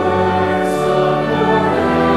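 A congregation singing a psalm refrain together in held notes over instrumental accompaniment.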